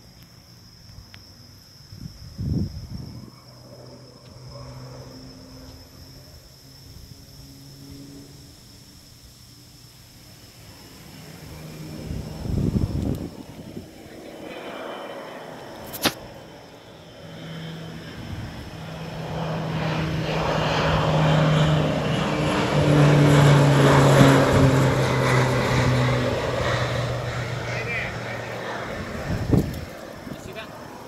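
Crop-duster airplane flying low overhead: its engine and propeller drone swells from faint to loud over several seconds, peaks, then fades with a slight drop in pitch as it passes.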